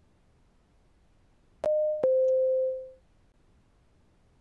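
Two-note electronic chime from a video-call app, a short higher note then a lower note held for about a second, each starting with a click. It is the notification of a participant reconnecting to the call.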